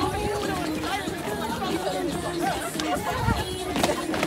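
Many people talking at once, overlapping crowd chatter, with a sharp click near the end.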